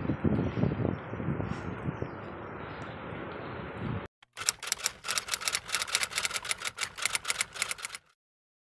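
Rumbling outdoor noise on a phone microphone. After a cut, a fast, even run of sharp clicks, about six a second, stops suddenly.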